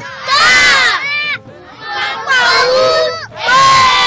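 Many children's voices reciting together in loud unison, shouting out words in bursts about a second long with short gaps between.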